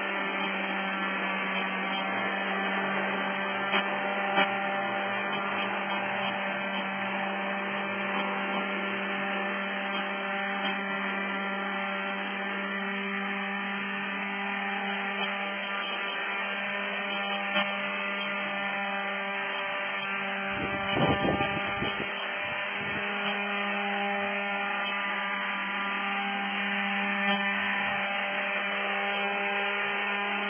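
Radio-controlled model helicopter hovering: its motor and rotor blades make a steady, even-pitched drone. A brief low rumble comes about two-thirds of the way through.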